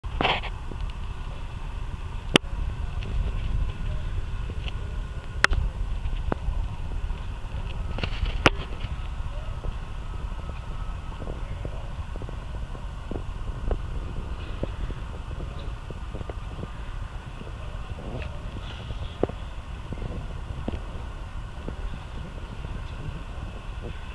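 Room ambience with a steady low rumble and faint background voices. Three sharp clicks come about three seconds apart in the first half, with lighter scattered ticks after them.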